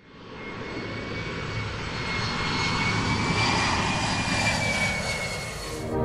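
Jet airplane flying past, used as a sound effect: a rushing jet noise with a steady high turbine whine, fading in from silence, swelling, then cutting off suddenly near the end.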